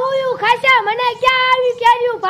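Dialogue only: a very high-pitched voice talking in drawn-out, sing-song phrases.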